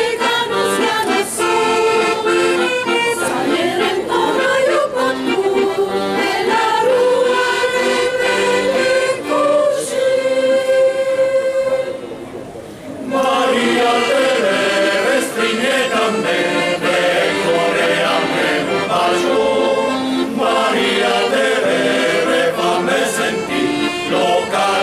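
Mixed men's and women's folk choir singing in parts with accordion accompaniment. The music breaks off briefly about halfway through, then picks up again.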